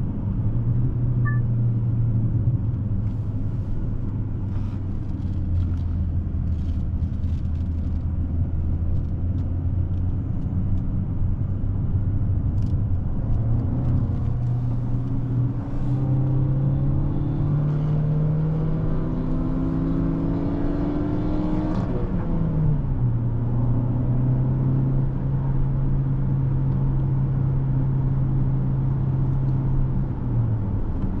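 Cabin sound of a Chery Tiggo 8 Pro Max SUV on the move: a steady engine hum with tyre and road noise. About halfway through, the SUV accelerates hard and the engine note rises. Two-thirds of the way through the note drops suddenly at an upshift, then holds steady as the car keeps gaining speed.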